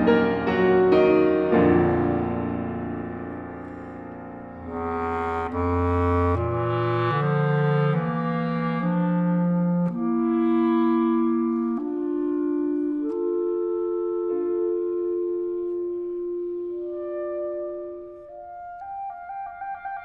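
Clarinet, bass clarinet and piano playing late-Romantic chamber music. Loud piano chords in the first two seconds die away. The clarinets then take a slow passage, with low notes stepping downward and then long held tones.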